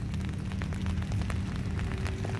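Outdoor background noise: a low steady rumble with a faint hum and scattered faint ticks.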